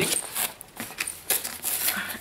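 A cardboard parcel being handled, with irregular small taps, knocks and rustles.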